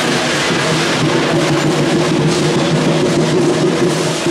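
Loud, steady din of a Chinese dragon-dance percussion band, cymbals and gongs clashing over a drum, with no let-up.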